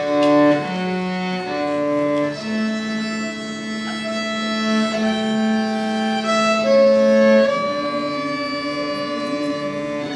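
Cello and violin playing a slow duet with bowed, sustained notes, one long held lower note lasting about five seconds through the middle.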